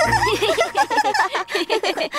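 A group of children's voices laughing and giggling together, several overlapping at once.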